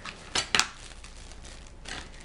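A small plastic hot glue gun set down on a granite countertop: two sharp clacks about half a second in, then a lighter tap near the end.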